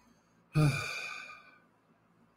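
A man's voiced sigh, about a second long, starting abruptly and falling in pitch as it fades.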